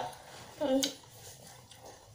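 A brief voice sound, a short murmur or syllable about half a second in, ending with a faint click; otherwise only low room noise.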